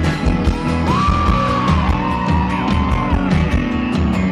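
Live rock band playing a song on electric guitars, bass guitar and drums, with a steady drum beat and full low end. From about a second in, a high held line bends up and down in pitch, then fades just after three seconds. Heard through a compact camera's microphone.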